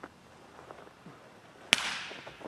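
A single sharp firecracker bang about one and a half seconds in, with a short echo trailing after it.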